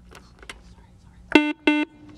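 Quiz-show buzzer signal: two short electronic beeps at one steady pitch in quick succession about a second and a half in, the sound of a contestant buzzing in to answer.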